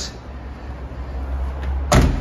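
A 2012 Nissan Juke's tailgate swung down and shut with a single sharp slam near the end, after a low rumble.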